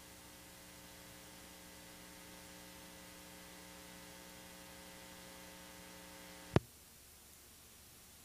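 Steady electrical mains hum with a row of overtones, cut off by one sharp click about six and a half seconds in, after which only faint hiss remains.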